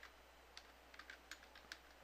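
Faint computer keyboard typing: a handful of scattered, soft key clicks as text is entered.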